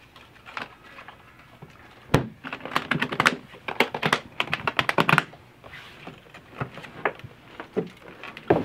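A brown hardshell guitar case shut with a thump about two seconds in, followed by a quick run of sharp clicks and snaps as its metal latches are fastened. A few scattered lighter clicks and knocks follow near the end.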